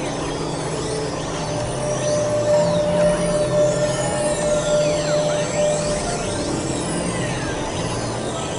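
Dense experimental electronic music: a noisy drone texture crossed by many high whistling sweeps rising and falling, over a steady held tone that fades out near the end.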